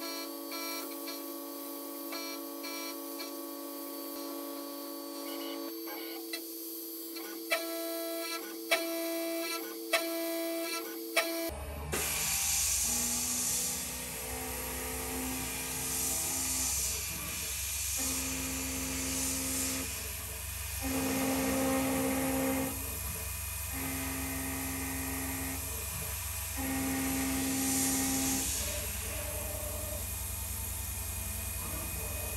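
CNC milling machine cutting aluminium with an end mill. It comes in about 11 seconds in, after a stretch of steady, pitched-up tones with a few clicks. The cutting tone comes and goes in passes of about two seconds over a steady motor hum, with a hiss from the coolant mist nozzle swelling several times.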